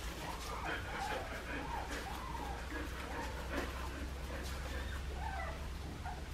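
Australian Shepherd puppies about two and a half weeks old whimpering and squeaking, many short cries that rise and fall in pitch, with a faint rustle of wood shavings as they crawl about.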